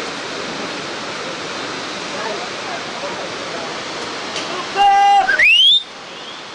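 Steady rushing noise of wind or water, with a person yelling near the end: a held loud note that turns into a sharply rising whoop and stops abruptly.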